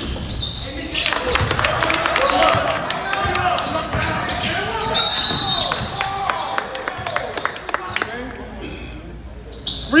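Basketball bouncing on a gym's hardwood floor during play, with a short, high referee's whistle about halfway through.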